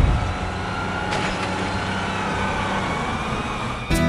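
Steady, dense wash of noise like road traffic, with a faint tone gliding up and then down through it. A guitar comes in at the very end.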